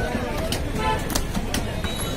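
Butcher's cleaver chopping beef on a wooden chopping stump, several sharp chops about half a second apart, over background voices.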